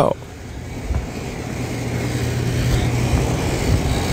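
Steady low hum under a noisy haze that slowly grows louder: the room sound of an empty store, picked up by a phone camera carried through it.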